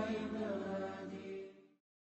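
Melodic vocal chanting on held pitches, fading out and stopping near the end.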